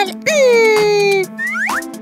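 Children's background music under a child's drawn-out falling voice sound, then a quick rising cartoon sound-effect swoop about three quarters of the way through.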